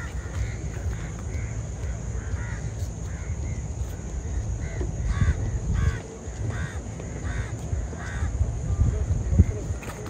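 Birds calling over and over, with a run of five louder, evenly spaced calls in the middle, over a steady low rumble.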